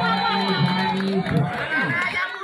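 Crowd of volleyball spectators shouting and cheering over music playing through a loudspeaker after a point is won.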